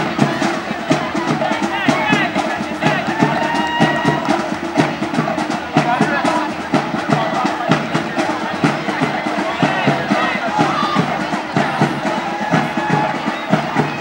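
Drums played at the courtside for a marching procession, a steady run of quick beats, over the chatter and calls of a crowd.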